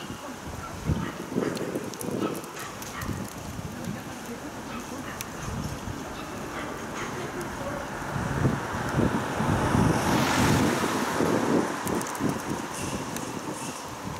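Wind buffeting the microphone in irregular gusts, with a louder rushing swell between about eight and twelve seconds in.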